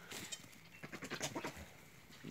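Young goats bleating faintly, with a short rustling noise just after the start and a few soft short sounds around the middle.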